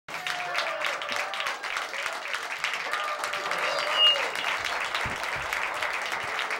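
Applause and cheering after a live acoustic performance, with voices calling out over the clapping and a short, high whistle about four seconds in.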